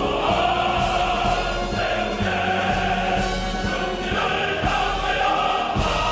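Background music: a choir singing with instrumental accompaniment.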